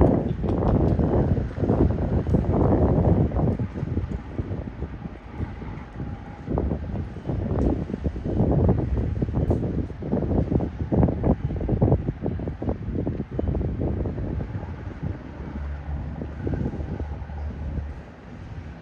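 Wind buffeting a handheld phone microphone in irregular gusts, heaviest in the first few seconds. A low steady rumble sits underneath near the end.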